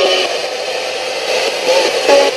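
Portable radio scanning up the FM band as a spirit box, played through a small portable speaker. It gives a steady hiss of static between stations, with brief snatches of broadcast sound near the end.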